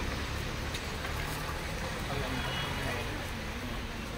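City street background: a steady low rumble of traffic with indistinct voices of people nearby.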